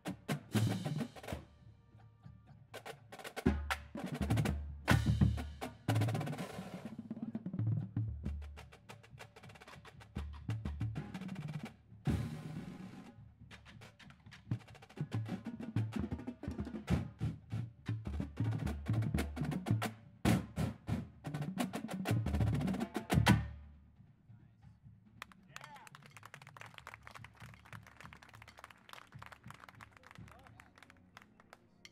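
Drum corps battery of marching snare drums, tenor drums and bass drums playing a warm-up exercise together, with rapid rolls and heavy accented unison hits. The ensemble stops abruptly about 23 seconds in, and soft, rapid ticking follows.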